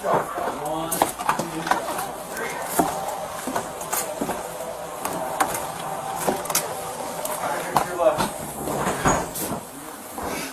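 Indistinct, muffled voices with scattered sharp clicks and knocks.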